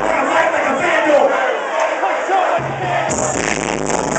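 Concert crowd shouting and cheering while the beat drops out to a breakdown with no bass. The bass comes back in about two and a half seconds in, and the cymbals half a second later.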